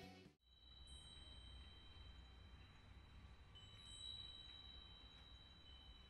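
Music cutting off just after the start, then near silence: faint ambience with a low rumble and thin, steady high tones, a second tone joining about halfway through.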